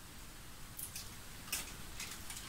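Faint rustling and scraping of small cosmetic packaging being picked open by hand, a few short scrapes in the second half.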